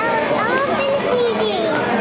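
A toddler's high-pitched voice, drawn-out sounds sliding up and down in pitch, over the background voices of other children.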